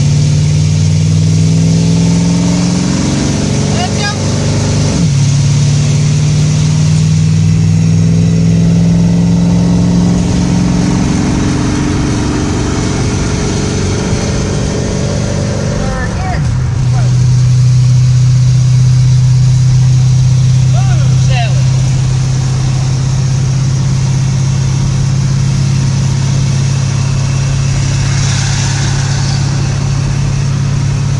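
1966 Ford Mustang's engine and exhaust heard from inside the cabin while driving. The engine note climbs as the car accelerates over the first few seconds and drops at a gear change about four seconds in. It shifts again about halfway through, then settles to a steady cruise.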